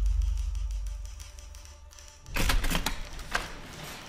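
A deep low rumble fades away over the first two seconds. Then comes a quick clatter of typewriter keystrokes and a single key strike about a second later, over a faint sustained musical tone.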